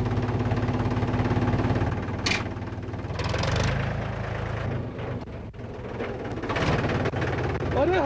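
Tractor diesel engine idling steadily, a fast even low chugging.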